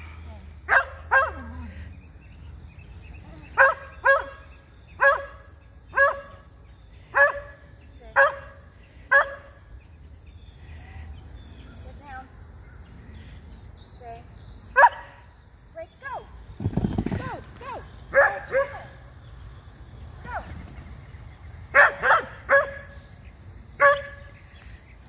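Dog barking in short single barks, about one a second for the first ten seconds, then in scattered pairs and triplets. A steady high insect trill runs behind, and there is a brief low rumble about seventeen seconds in.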